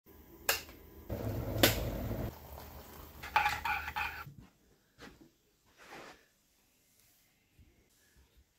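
Kitchen sounds: an electric kettle's switch clicks, followed by about a second of rushing noise. Then a metal teaspoon stirs a ceramic mug of tea, clinking against its sides several times, and the clinks ring.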